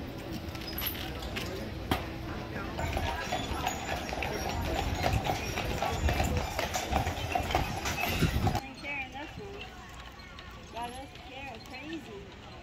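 Horse hooves clip-clopping on a paved street as a horse-drawn carriage passes, with many sharp strokes over a busy murmur of people talking. About eight and a half seconds in, the sound cuts off abruptly to quieter voices.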